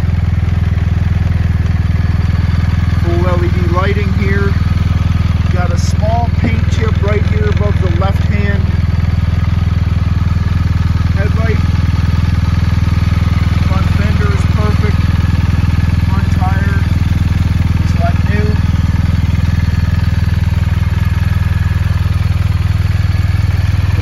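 BMW R1250RS's boxer-twin engine idling steadily, a constant low hum with no revving.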